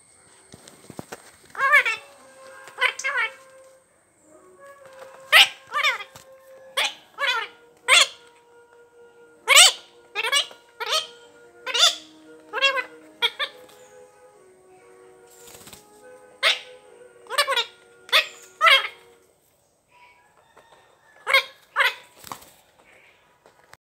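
A rose-ringed parakeet (Indian ringneck) calls loudly and repeatedly in short, sharp bursts, about twenty calls in clusters with brief pauses between them. Faint held musical notes run underneath.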